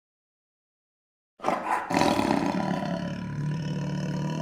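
An outro sound effect over the end cards. After dead silence, a loud, rough sound starts suddenly about a second and a half in, hits again half a second later, and then holds steady with a low hum underneath.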